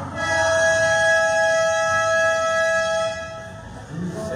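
A horn-like buzzer sounds one loud, steady tone for about three seconds, then cuts off, over low crowd noise.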